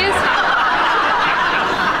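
Studio audience laughing together, loud and sustained, easing slightly near the end.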